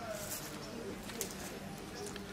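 A bird calling faintly over quiet outdoor background sound.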